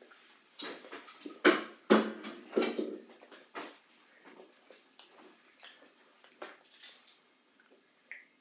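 A person eating a chocolate egg: chewing and wet mouth smacks close to the microphone, a few sharp ones in the first three seconds, then fainter.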